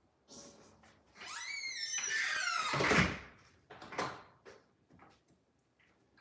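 A high squeak that rises in pitch over about a second and a half, followed by a short clatter and two light knocks.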